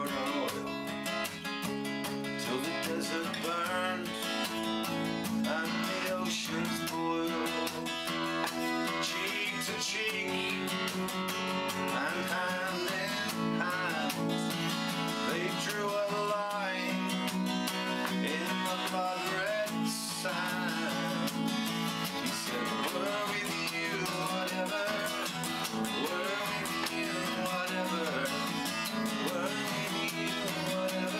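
Solo acoustic folk song: steel-string acoustic guitar strummed steadily, with a man singing over it.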